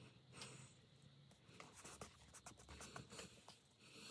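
Faint rustling and small clicks of torn paper pieces being handled and pressed into place on a paper collage, the clicks coming thicker in the second half.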